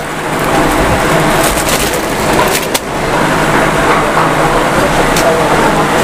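Indistinct background voices over a steady, loud din.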